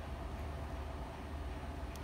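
Steady low hum and hiss of background noise, with no distinct sounds.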